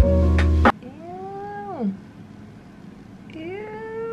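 Background music that cuts off about half a second in. Then two long, drawn-out cries a couple of seconds apart, each rising, holding and then falling in pitch.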